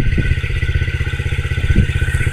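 Yamaha TTR50 mini dirt bike's small four-stroke single-cylinder engine idling, a rapid even putter.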